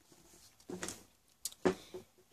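Faint handling noise as a bag and books are moved on a shelf: soft rustles, a sharp click, and a brief vocal sound near the end.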